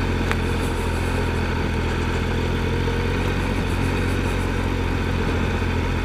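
Triumph Explorer XCa's 1215 cc three-cylinder engine running with a steady, low note as the motorcycle rolls along a grassy trail.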